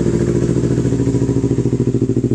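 Yamaha R3's parallel-twin engine idling steadily through a replica Yoshimura R77 slip-on exhaust, with an even, fast pulsing beat.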